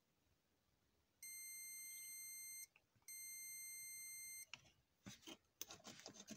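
DT9205A digital multimeter's continuity buzzer beeping twice, each a steady high-pitched tone of about a second and a half, as its probes touch pairs of contacts in a car power-window switch: the contacts conduct. A few light clicks of the probe tips follow near the end.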